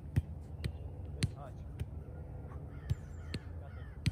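Soccer ball struck by feet in two-touch passing on grass: three pairs of sharp thuds, each a controlling touch followed about half a second later by the pass. A few short bird-like calls sound faintly in the background.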